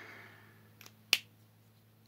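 A sharp plastic click about a second in, with a fainter one just before it: a small cosmetic product being opened in the hands.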